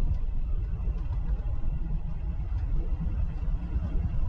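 A truck travelling at a steady speed: a continuous low rumble of engine and road noise, with no revving or gear changes.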